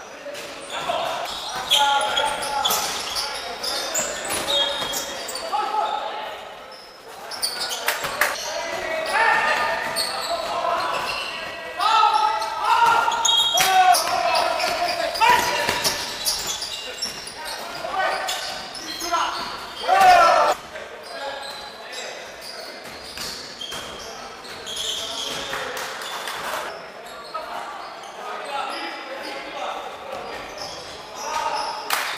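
Live sound of a basketball game in a large gym hall: players' shouts and calls echoing, with the ball bouncing on the wooden floor.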